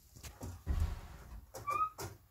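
Irregular rustling and dull knocks of handling, with one short, slightly rising squeak near the end.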